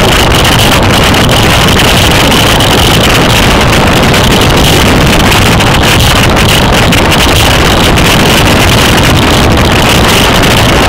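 Loud, steady wind noise buffeting a bicycle-mounted camera's microphone while riding at speed, with a steady high hiss running through it.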